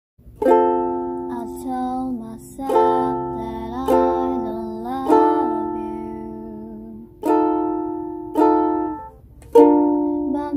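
Ukulele strummed in slow chords, each chord struck and left to ring out before the next, about every one to two seconds.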